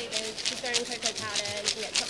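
Indistinct voices talking over a quick, steady rattle of ice shaken inside a handheld plastic toy ice-cream maker.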